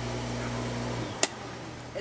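Pool pump motor running on a freshly replaced start capacitor, giving a steady electrical hum; the motor now starts and runs instead of stalling. The hum stops suddenly about a second in, and a single sharp click follows.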